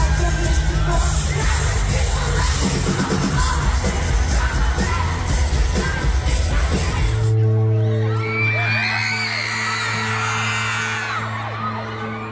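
A live pop-rock band playing loudly with drums and singing, heard from within the crowd. About seven seconds in, the sound changes abruptly to a single held keyboard chord, with fans screaming and whooping over it.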